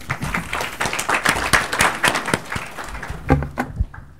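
Audience applauding with many hands clapping at once, dying away about three seconds in.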